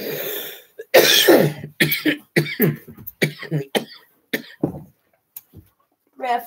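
A man coughing in a long fit after a hit of smoke: a breathy exhale at the start, then a run of coughs, the first about a second in the loudest, tapering off about a second before the end.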